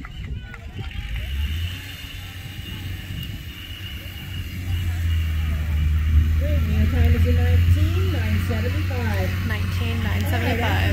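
Indistinct voices of people talking, with a steady low rumble underneath that grows louder about halfway through.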